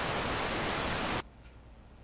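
Television-style static hiss, an edited-in white-noise effect laid under a colour-bar test pattern as a cut between clips; it is steady and cuts off suddenly a little over a second in, leaving faint room tone.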